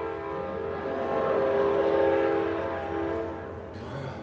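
Live music on stage: a long held chord of several steady pitches that swells about a second in and fades near the end.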